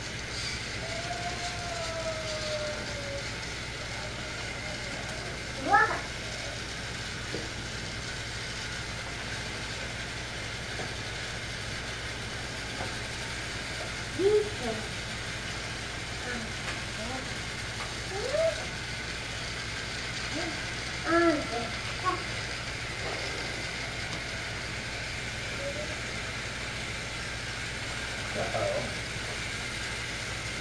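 Battery-powered TrackMaster toy trains running on plastic track, a steady whirring hum throughout. A few brief voice sounds break in, the loudest about six seconds in.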